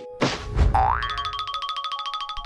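Cartoon-style comedy sound effect: a boing that slides up in pitch, followed by a rapid run of bright ticking notes over held tones.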